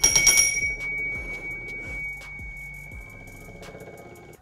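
A sudden metallic strike that rings on as one clear, high bell-like tone, fading over about three and a half seconds, with faint rapid ticking underneath.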